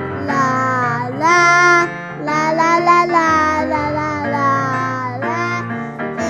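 A children's song: children singing a melody over instrumental backing, with a loud held note a little over a second in.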